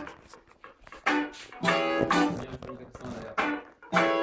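Electric guitar playing short, separated funk chord stabs in a loose jam, with a voice among them.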